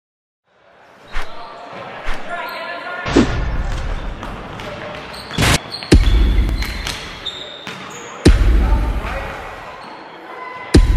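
A basketball bouncing slowly on a hard floor in a large echoing hall, three heavy bounces each about two and a half seconds apart, every one followed by a deep boom that fades away. Sharp clicks and short electronic tones are mixed in between, as in an edited intro.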